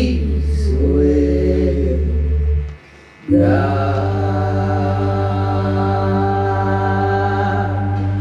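Live folk-rock duo: a man and a woman singing slow held notes in harmony over acoustic guitar and a steady low keyboard drone. The sound drops out briefly about three seconds in, then comes back on one long sustained sung chord.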